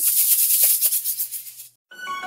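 Metallic gold foil pom-pom shaken hard close to the microphone: a rapid, crinkly rustle that fades out just before the end.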